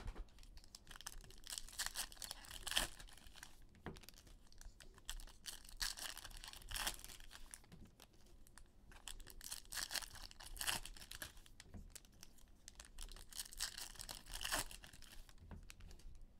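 Foil trading-card pack wrappers being torn open and crinkled, one faint rip about every four seconds.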